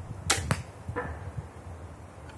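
Small torsion ballista being shot: two sharp cracks a fraction of a second apart as the arms snap forward and the bolt leaves, then a fainter knock with brief ringing about a second later.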